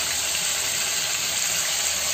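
Boneless chicken thigh pieces frying in hot oil in a kadai over a medium-high flame, with a steady sizzle.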